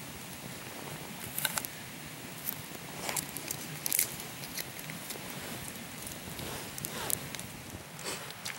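Small wood campfire burning, with scattered sharp crackles and pops over a steady hiss, the loudest pops about a second and a half in and again about four seconds in.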